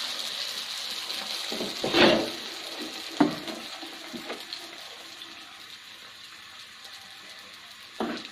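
Teler pitha (sweet batter cake) deep-frying in hot oil: a steady sizzle that slowly grows quieter. A short knock comes about two seconds in and a sharp click about a second later.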